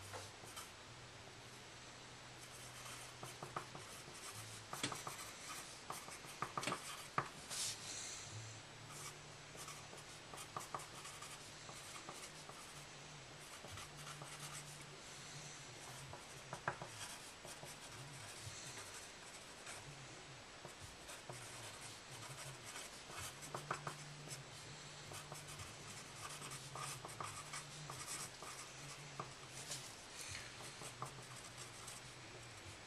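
Pencil writing on paper laid on a wooden desk: runs of short scratchy strokes with brief pauses, over a faint low hum.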